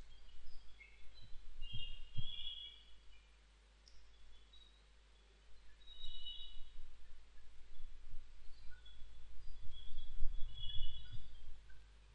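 Background room noise with a steady low hum, and faint short high chirps of birds scattered through it; a few soft knocks in the first two seconds.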